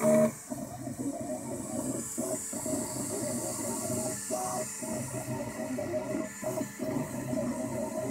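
Ultimaker 2 3D printer at work: its stepper motors whine in short pitched tones that change and break off every fraction of a second as the print head moves back and forth, over a steady fan hiss. A brief louder tone sounds right at the start.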